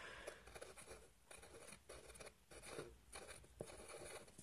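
Faint scratching of a pencil drawing short strokes on paper, coming and going with small pauses.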